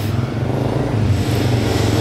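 Road traffic: a motor vehicle engine running close by, a steady low engine sound.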